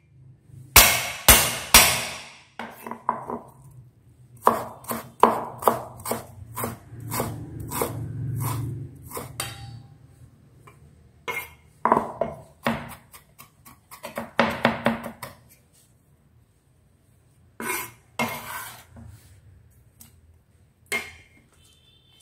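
Cleaver chopping and mincing ginger on a wooden chopping board: irregular runs of sharp knocks, with a short pause about two-thirds through.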